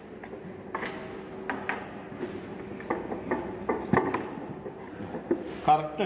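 Scattered light clinks and knocks of a metal theodolite being handled and settled into its wooden storage box, with a brief metallic ping about a second in and a sharper knock near four seconds.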